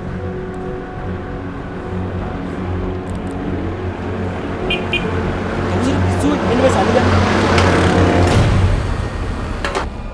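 A motor vehicle passing on the road. Its sound swells to the loudest point about seven to eight seconds in, then falls away, over a steady low hum.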